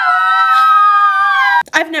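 Soprano voice singing one high, held note that sags slightly in pitch and cuts off abruptly about one and a half seconds in.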